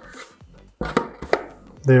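Metal parts of a cyclone dust separator being handled and fitted together: a cyclone cone on a metal bucket lid, with a metal clamping ring. Three or so sharp knocks and clinks come about a second in.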